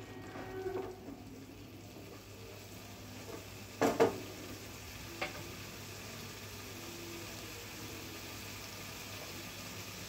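Thick oily curry of dried fish sizzling in a non-stick frying pan, stirred with a wooden spatula at first, then left to sizzle steadily and quietly. A sharp knock comes about four seconds in, with a smaller click a second later.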